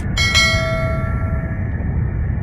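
A cartoon bell-like metallic ring, struck twice in quick succession near the start. Its several tones ring on and fade over about a second and a half, over a steady low rumble.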